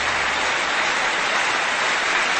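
Concert audience applauding, a steady wash of clapping as a live song ends.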